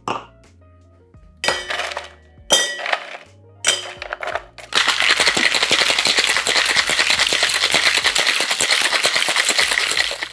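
Ice dropped into a metal cocktail shaker tin in three short clinking bursts. Then a daiquiri is shaken hard in metal shaker tins, with ice rattling rapidly and evenly for about five seconds, to chill and dilute it.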